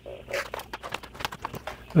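A knife slitting open the top of a foil Mylar freeze-dryer bag: an irregular run of crisp ticks and crackles as the blade cuts and the foil crinkles.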